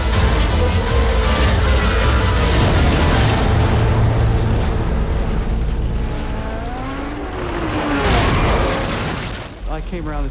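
Film soundtrack: dramatic music mixed with deep booming rumbles and racing car sounds, dipping in level shortly before the end.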